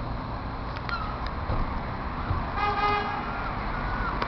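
Steady rumble of city-street traffic, with one short vehicle-horn toot, about half a second long, a little under three seconds in.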